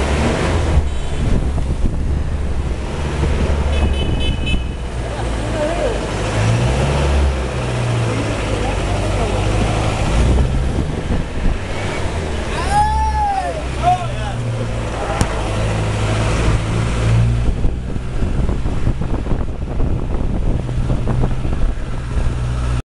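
Vehicle engine running steadily under load, heard from inside as it climbs a steep street, its pitch rising and falling with the throttle. A short run of high horn toots comes about four seconds in, and a brief high-pitched call near the middle.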